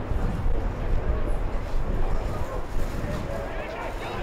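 Distant voices of players and spectators calling out on an open ground, with a low rumble of wind on the microphone through the first couple of seconds.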